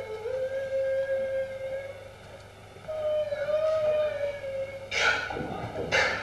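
Long held musical notes at one steady mid pitch, with slight bends, from a stage comedy act, in two stretches with a quieter gap about two seconds in; about five seconds in, a burst of noisy voice sound cuts in over it.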